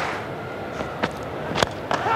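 Steady stadium crowd noise, broken about a second and a half in by a sharp knock of a cricket bat striking the ball, with a fainter click about half a second before it.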